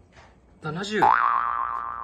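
Cartoon-style "boing" sound effect edited into the video: a bright pitched tone that comes in about halfway through, wobbles briefly in pitch, then holds steady and fades out.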